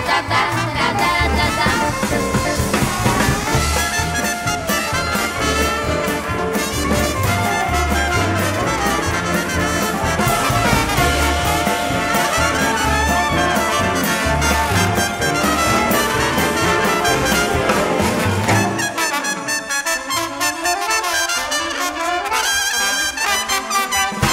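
Jazz big band playing, with the brass section of trumpets and trombones out front over bass and drums. About five seconds before the end the bass and drums drop out, leaving the horns.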